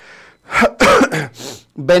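A man coughing and clearing his throat: a breath in, then a few short, harsh bursts starting about half a second in.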